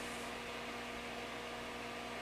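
Steady low electrical hum with a faint hiss under it: quiet room tone, with two unchanging tones and no other events.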